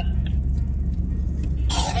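Steady low rumble of a 4x4 driving across desert sand, heard from inside the cabin, with a brief burst of voice near the end.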